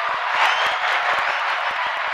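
Crowd applause: a steady, dense wash of clapping that swells about half a second in.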